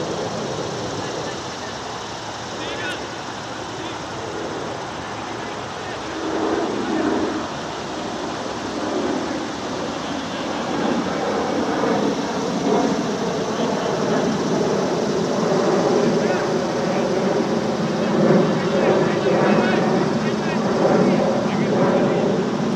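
Several men's voices talking and calling out at a distance across an open field, over a steady background hiss; the voices grow louder and more overlapping in the second half.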